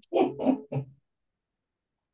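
A person's brief, muffled vocal sounds, not clear speech, lasting about a second, then cutting off abruptly.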